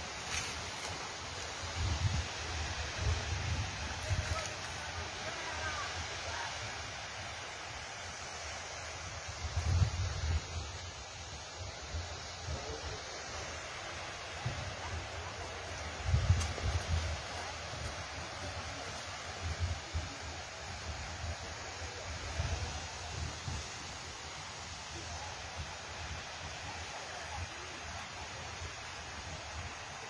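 Gusts of wind rumbling on a phone microphone at irregular intervals, over a steady outdoor hiss.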